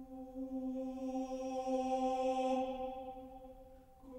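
A cappella choir holding one sustained unison note. It swells to its loudest about two seconds in, then fades away.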